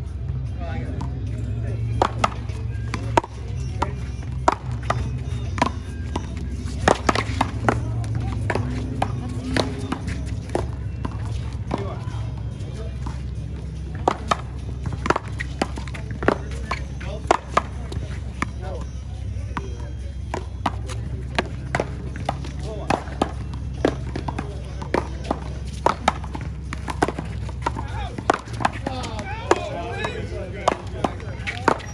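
Paddleball rally: paddles striking a rubber ball and the ball smacking the wall, a run of sharp cracks at an uneven pace, often about a second apart.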